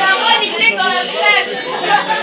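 Chatter of many people talking over one another in a crowded room, mostly women's voices, with no single voice standing out.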